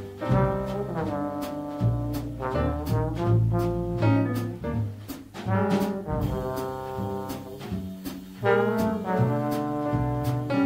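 Small jazz group playing: a trombone carries the melody over acoustic piano, upright bass and a drum kit with cymbals.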